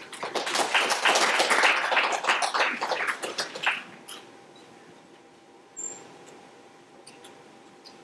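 Audience applauding for about four seconds, then dying away into a quiet room. A single brief high squeak comes a little before six seconds.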